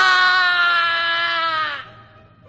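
A voice actor's long scream of pain: a single 'ahh!' held for nearly two seconds, sinking slightly in pitch and fading out near the end.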